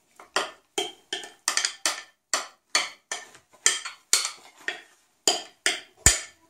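A spoon knocking and scraping in a glass mixing bowl as thick cake batter is worked out into a metal tube cake pan, in a steady run of short sharp knocks about three a second, with one louder knock at the very end.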